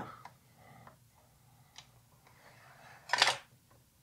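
A 35mm slide viewer's slide-changing mechanism advancing to the next slide: a few faint clicks, then one short sliding clack a little after three seconds in.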